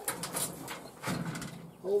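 Old steel school locker's latch worked and its metal door pulled open: a few light metal clicks.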